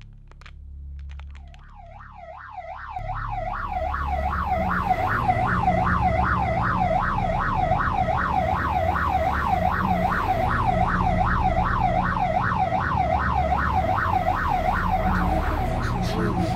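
Emergency-vehicle siren with a rapid rising-and-falling wail, fading in over the first few seconds and then holding loud, over a low rumble of vehicle and road noise.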